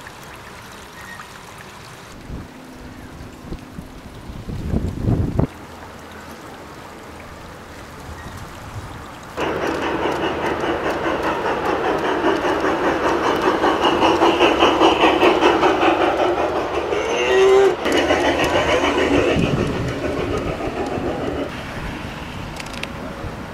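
Garden-scale model steam locomotive running on track: a dense, rapid rhythmic rattle starts suddenly about nine seconds in and carries on to near the end, with a brief rising tone near the seventeen-second mark. Before it there is a short low rumble.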